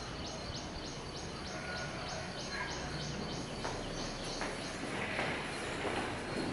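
Rapid, regular high-pitched chirping, about three chirps a second, that fades out about four seconds in. A few soft knocks come near the middle, over a steady background hiss.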